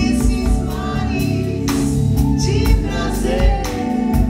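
Live band music: a female singer holding and sliding through a melodic vocal run over sustained organ chords, with a few drum hits.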